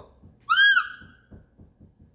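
A short, high whistle-like squeak about half a second in, its pitch rising then falling, followed by a run of faint clicks.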